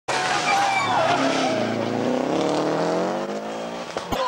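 Rally car engine at high revs, its pitch climbing steadily through the second half as the car accelerates, over loud tyre and road noise.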